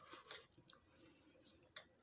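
Quiet mouth sounds of a person taking a spoonful of lentil soup and chewing: a couple of short soft slurps at the start, then a few faint clicks.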